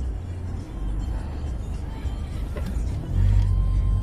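Low rumble of a moving car heard from inside the cabin: engine and tyre noise while driving in traffic, growing louder about three seconds in.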